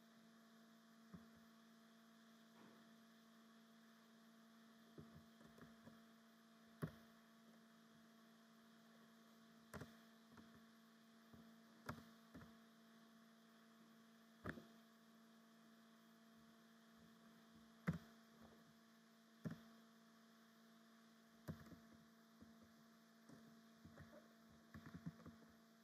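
Near silence with a faint steady electrical hum, broken by single keyboard keystroke clicks every second or few seconds as a formula is typed slowly.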